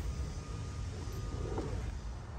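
Steady low outdoor background rumble with no distinct event.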